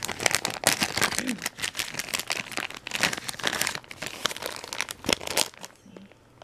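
Clear plastic bag of wax melts crinkling and crackling as it is handled and a wax melt piece is taken out. The crackling stops shortly before the end.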